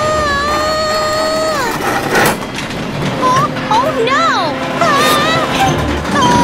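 Cartoon voice sounds: a long held wordless cry that ends about a second and a half in, a sharp knock about two seconds in, then several short wordless sliding vocal sounds that rise and fall.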